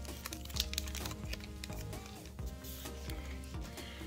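Foil trading-card booster pack crinkling in the hands as the cards are pulled out of it, a run of small sharp crackles and clicks, over steady background music.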